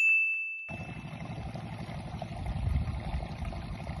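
A single bright ding sound effect rings out at the start and dies away over about a second. From under a second in, a steady rough background noise takes over, strongest in the low end.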